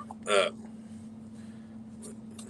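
A man's short, abrupt "uh" of hesitation, then only a steady low hum under quiet room tone.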